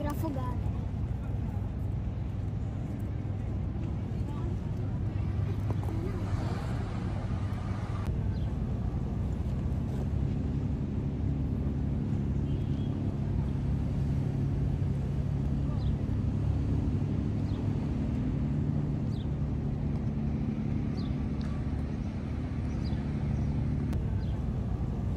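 Steady low drone of a high-speed catamaran ferry's engines running, its pitched hum growing stronger about ten seconds in as the ferry draws nearer.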